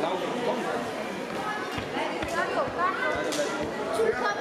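Indistinct voices of several people chatting at once, with a few light knocks in between.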